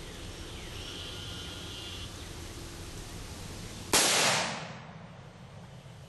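A single shot from a Bushmaster AR-15 rifle about four seconds in: a sudden sharp report that rings out and fades over about a second.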